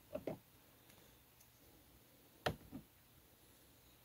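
A small plastic action figure being handled: two soft knocks as it is picked up at the start, then a sharp plastic click about two and a half seconds in, followed by a fainter one.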